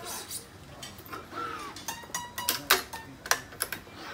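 A series of sharp clicks and knocks from a badminton stringing machine's clamps and tension head as a cross string is pulled and clamped. They come irregularly, several close together in the second half, the loudest about two thirds of the way through.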